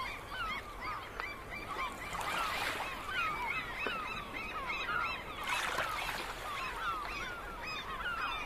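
A flock of birds calling: many short, overlapping chirping calls that keep up without a break, over a faint steady hiss.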